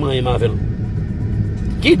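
A man speaking, breaking off about half a second in and starting again near the end, over a steady low rumble that fills the pause.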